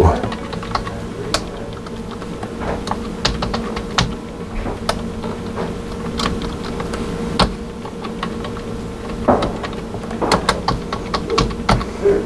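Typing on a computer keyboard: an irregular run of key clicks as a short phrase is keyed in letter by letter.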